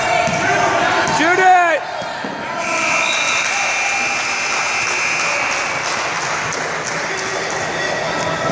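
Shot-clock buzzer sounding one steady tone for about three seconds, starting about three seconds in, as the shot clock runs out. Just before it comes a loud shout that rises and falls in pitch, over players' voices and crowd noise.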